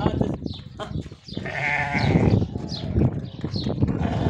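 A Sardi sheep bleating: one wavering bleat about a second and a half in, amid scuffling and knocking sounds.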